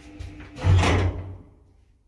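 1977 ZREMB lift's steady running hum ends about half a second in, and the car stops with a loud heavy clunk and rumble that dies away within a second.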